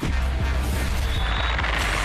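Television sports broadcast ident sting: a loud, dense sweep of noise over a deep booming bass, starting suddenly.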